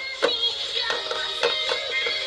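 A song playing: a singing voice over music, with several sharp percussive hits.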